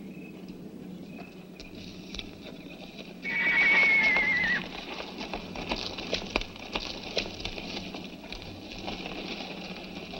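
Horses walking on a rocky trail, hooves clopping irregularly. About three seconds in, one horse gives a loud, wavering whinny that falls away at the end.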